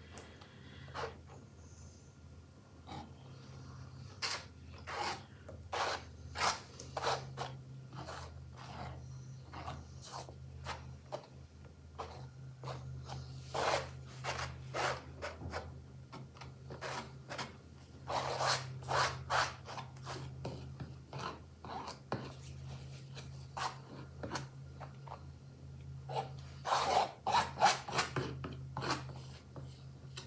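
A small spatula scraping and rubbing across a stretched canvas as thick wet acrylic paint is spread over it, in irregular strokes that come thickest near the end. A steady low hum runs underneath.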